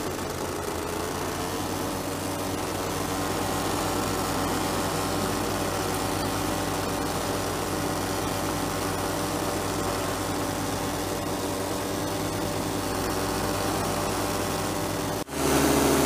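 Paramotor engine and propeller running steadily in flight, a constant drone with a rush of air over it. Near the end the sound breaks off for an instant and comes back louder.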